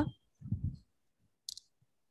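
A single short, sharp click about a second and a half in, preceded by a faint, low, muffled sound near the start.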